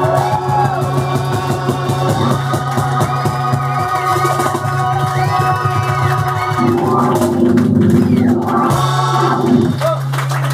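Reggae song played live on an electric stage piano, held chords over a steady low bass note, with voices and the audience clapping along.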